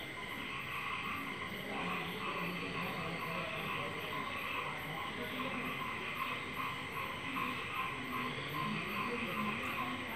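Marker pen squeaking and rubbing on a whiteboard in repeated short strokes as curved lines are drawn, over a steady faint hum.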